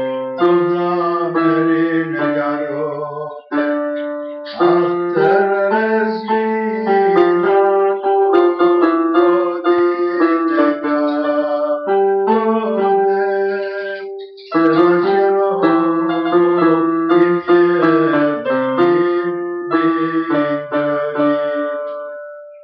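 Piano playing an Armenian song: a melody over chords, each note struck and dying away, in phrases broken by short pauses about four seconds in and about fourteen seconds in.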